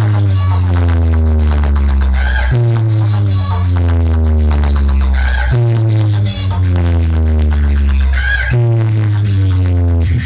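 Loud DJ dance music from a large competition speaker stack: a heavy bass note held for about two and a half seconds and repeating every three seconds, with falling-pitch sweeps over it.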